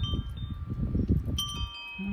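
Wind chimes ringing: several clear high tones struck a few at a time and left to ring on, with a fresh set of strikes about a second and a half in, over a low, uneven rumble.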